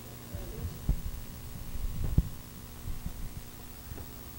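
Low thumps and rumble of a camcorder being handled as it is swung around, the loudest about a second in and just after two seconds, over a steady low hum.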